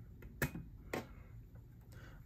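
Two short, sharp plastic clicks about half a second apart as a clip-on USB-C hub's slide lock releases and the hub comes free from the underside of an iMac.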